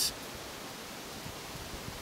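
Steady background hiss with no distinct sound event: a pause between spoken sentences.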